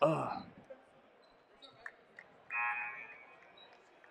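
Players' voices in a large gymnasium: a short loud voice at the very start and a drawn-out distant call about two and a half seconds in, over a low murmur, with a few faint taps or sneaker squeaks in between.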